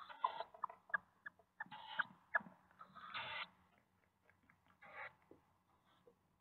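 Tawny owl chicks begging in the nest box as they are fed, giving several rasping, hissy calls about a third of a second long, with short squeaky notes in between during the first half.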